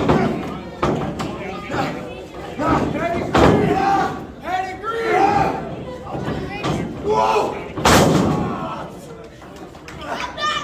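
Pro wrestling ring impacts: strikes and bodies landing on the ring canvas, a sharp slam about every second or so, the loudest about eight seconds in. Spectators shout between the slams.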